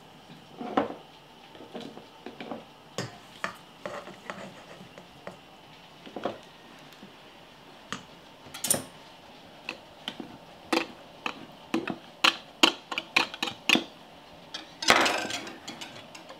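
Light clicks, taps and scrapes of a plastic serving spoon against a stainless steel mixing bowl and a glass jar as sliced jalapeños are spooned through a plastic funnel into the jar. The taps are sparse at first and come quicker in the last few seconds, with a longer scrape near the end.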